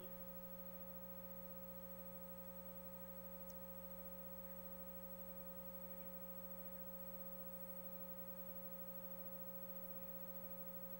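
Faint, steady electrical hum made of several fixed tones, the only sound on the audio feed.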